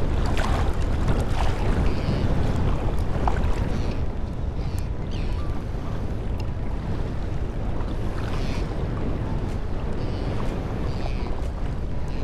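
Wind buffeting the microphone over choppy open water, with small waves lapping close by.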